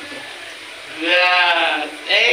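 A woman laughing, one drawn-out wavering vocal sound starting about halfway through and lasting most of a second.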